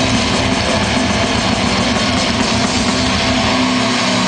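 Live extreme metal band playing: a dense, unbroken wall of distorted guitars, bass and drums at high volume.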